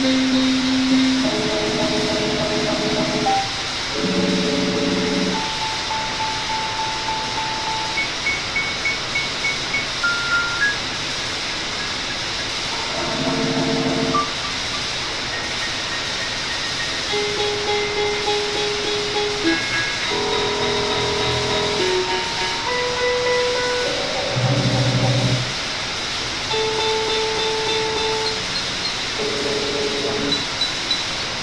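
Experimental electronic drone music: held tones and stacked chords, each lasting a second or two, over a steady hissing noise bed, with a few short high beeps.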